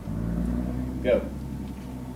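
A low rumble starts suddenly and runs under the drill's count. A single shouted "go" comes about a second in.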